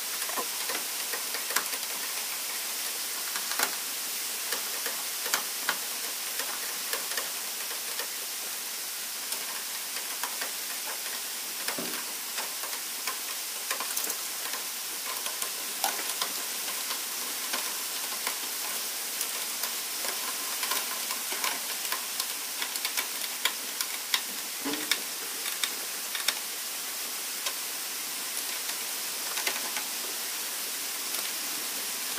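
Irregular light metallic clicks and clinks of a wrench and bolts on steel brake-booster mounting brackets at a car's firewall, with a couple of duller knocks, over a steady hiss.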